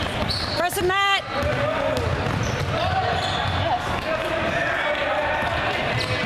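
Basketball dribbled on a hardwood gym floor amid spectators' chatter and calls, with one loud shout about a second in.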